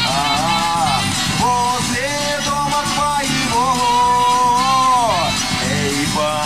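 Live rock band playing an instrumental passage: acoustic guitar strumming over bass and drums while a wind instrument plays the melody, bending between notes and holding one long note about midway through.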